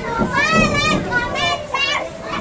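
A crowd of children chattering and shouting, with two loud high-pitched shouts, one about half a second in and one about a second and a half in.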